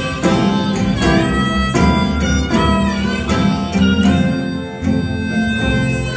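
Live acoustic blues in C on two ukuleles and bass, with a blues harmonica playing bending lines over the plucked ukulele chords.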